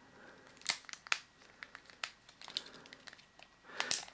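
Plastic packaging crinkling and rustling, with a few sharp clicks from a small plastic mobile phone being handled.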